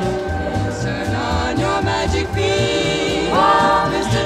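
Choral music: several voices singing held, sliding notes, rising to a higher phrase about three seconds in, over a low repeating pulse.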